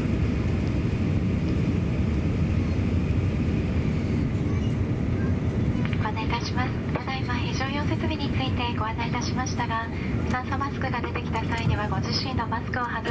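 Steady low rumble inside the cabin of an Airbus A350-900 airliner during pushback. From about six seconds in, a cabin safety announcement voice plays over it.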